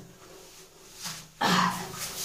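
A woman makes a short wordless vocal sound, like a throat clear, about a second and a half in, after a quiet first second.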